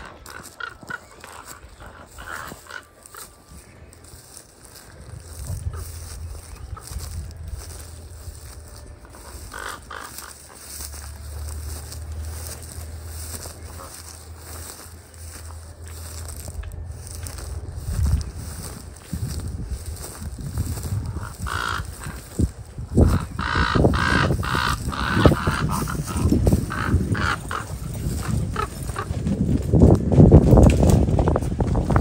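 Ravens calling with repeated harsh croaks as they mob a great horned owl, a few calls early and then calling more often through the second half. At times there is a low rumble of wind on the microphone.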